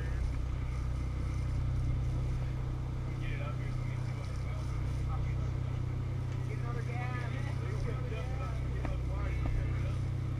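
A sportfishing boat's engines running steadily with a low hum. Indistinct voices are heard about three seconds in and again from about seven to nine seconds.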